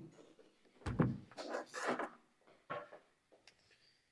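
A heavy portable Bluetooth speaker set down on a table with a thump about a second in, followed by scraping and rustling handling noise and a short click near the end.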